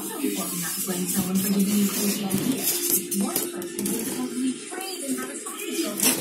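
Newly hatched chicks peeping in an incubator, short high squeaks over background voices and music.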